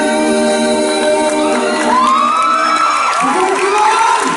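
Three male voices holding a last harmonized note, sung mostly a cappella. From about halfway the audience breaks into cheering with high-pitched screams.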